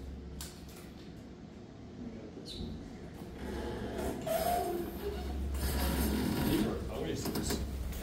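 Elevator's single-speed center-opening hoistway and car doors sliding open, with a mechanical rumble over a steady low hum, growing louder about halfway through as the doors open and people step into the car.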